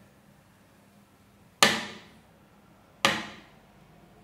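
Two sharp knocks about a second and a half apart, each dying away briefly in the room.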